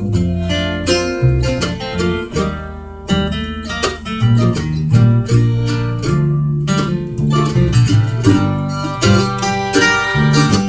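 Acoustic string band playing an instrumental break with no singing: fiddle bowed over strummed acoustic guitar, mandolin and upright bass.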